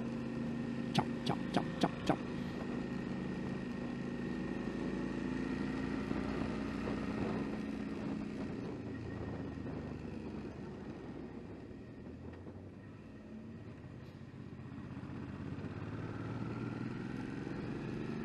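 A 2009 Suzuki V-Strom 650's V-twin engine running under way with wind noise, heard from the rider's position. A few sharp clicks come about a second in. The engine eases off and grows quieter in the middle, then picks up again with a rising note near the end.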